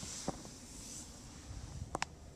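Faint rustling hiss with two small clicks, one about a third of a second in and a sharper one near the end: handling noise from a camera being moved around inside a car's cabin.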